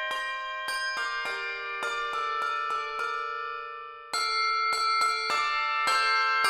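A two-octave handbell choir ringing a lively sequence of chords, each strike sustaining and ringing on. Midway the ringing fades, with one tone wavering, until a loud chord enters about four seconds in.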